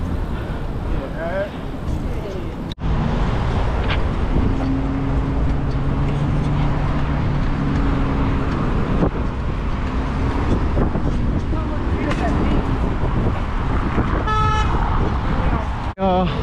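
Wind buffeting the action-camera microphone over road and traffic noise while riding a bike in city traffic. A low vehicle horn is held for about four seconds in the middle.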